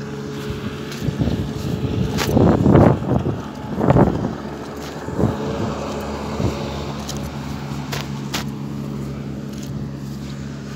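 Steady engine hum, with a few louder bursts of rumbling noise between about two and four seconds in.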